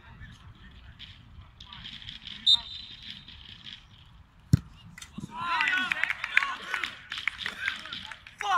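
A short referee's whistle blast, then about two seconds later the sharp thump of a football being struck for a penalty kick. From half a second after the kick, shouts and cheers as the penalty goes in.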